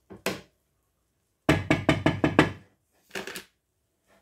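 Hard knocks: two single strikes, then a quick run of about seven, then two more near the end.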